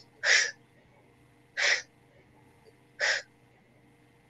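A woman gives three sharp, voiceless breaths into the microphone, evenly spaced about a second and a half apart. They are part of a chanted Maya spirit-calling ritual.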